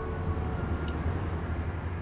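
Low, steady rumble of street traffic, with one brief high-pitched sound about a second in.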